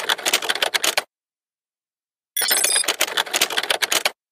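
Rapid typewriter-style clicking sound effect, laid under on-screen text being typed out, in two runs of about a second and a half each. The runs are split by a gap of dead silence: the first stops about a second in, and the second starts about two and a half seconds in.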